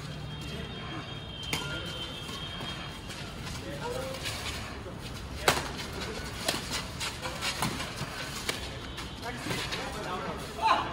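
Badminton rally: sharp racket strikes on the shuttlecock, several in the second half about a second apart, the loudest halfway through, with voices in the background.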